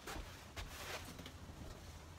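Faint rustling and handling noise as a cardboard template is moved about and lifted into place, in two short soft bursts over a low steady hum.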